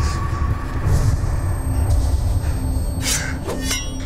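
Tense, dark film score with a deep low rumble and a faint pulsing low tone. About three seconds in, a sharp swish-like sound effect is followed by a brief ringing.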